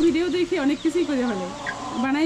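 Desi chickens clucking, a quick run of short repeated notes in the first second.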